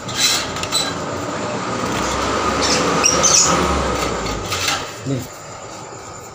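Close rustling and rumbling handling noise as a lovebird keeper reaches into a cage and catches two lovebirds by hand. The noise swells in the middle, then dies away about five seconds in.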